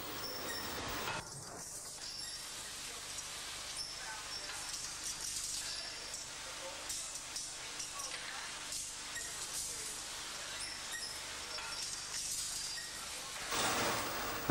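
Blanking press in a steel works punching sheep-shear blanks from coiled steel strip: a steady machinery noise with light, irregular clicks and clinks of steel blanks.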